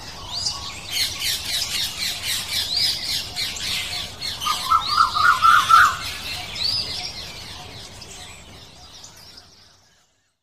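Many birds chirping and squawking at once in busy, overlapping calls, with a run of lower calls about five seconds in. The chorus fades out steadily over the last few seconds.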